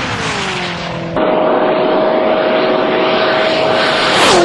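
High-speed flyby of an SSC supercar on a record run, its engine note falling in pitch as it passes. About a second in there is a sudden cut to a steady engine tone with loud rushing noise of a car at speed.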